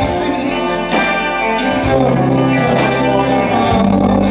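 Live rock band playing loud amplified music, guitar to the fore over bass and drums, with no singing in this passage.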